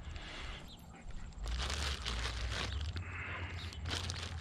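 Plastic treat bag crinkling and rustling as it is handled, the crackle starting about a second and a half in and running on, over a steady low rumble.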